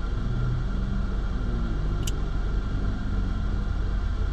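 Steady low rumble of a car idling, heard from inside the cabin, with a short click about two seconds in.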